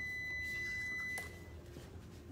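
A steady high-pitched electronic beep that cuts off abruptly a little over a second in, leaving faint room hum.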